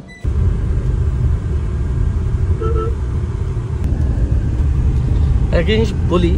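Steady low rumble of a Tata car driving, road and engine noise heard from inside the cabin. A brief toot sounds about halfway through.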